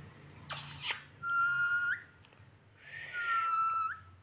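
Rose-ringed parakeet making two high, whistle-like calls, each a short hissy sound followed by a held note that turns up at the end. It is mimicking the word "mittu" that it is being taught.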